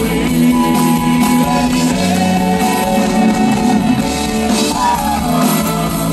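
Live rock band playing at full volume, guitars to the fore, with some singing.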